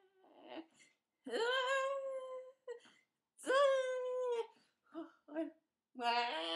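A woman's wordless voice: two long, high, held vowel cries of about a second each, the pitch rising slightly then falling away at the end, with short small vocal sounds between them.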